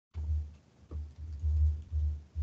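A low, uneven rumble with a faint hiss comes back about a tenth of a second in, after the call audio had cut out completely.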